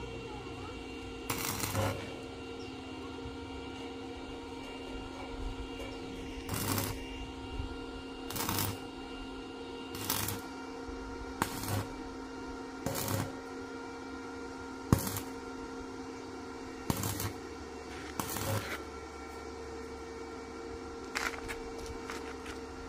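Stick (arc) welder tack-welding a steel square-tube gate frame: about ten short crackling bursts, each about half a second, one to three seconds apart, over a steady hum.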